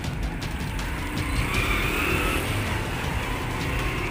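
A wooden pestle grinding ketoprak peanut sauce on a ceramic plate, scraping with a few light knocks in the first second or so, over a steady low rumble of road traffic.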